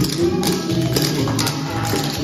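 Clogging shoe taps from several dancers striking a hard floor in quick rhythmic clusters, over a recorded song with a steady beat.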